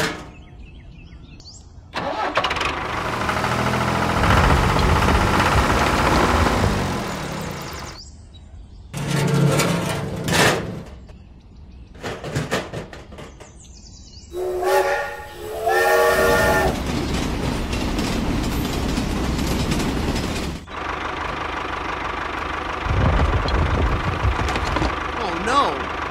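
Engine sounds cut in and out with the edits: an engine starts and runs, rising in pitch for several seconds, then runs again in shorter spells. About halfway through, a horn sounds twice.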